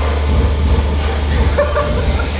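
Steady low rumble under an even hiss: live background noise in a gym.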